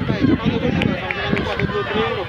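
Footballers' voices shouting and calling to one another on the pitch, several overlapping and indistinct.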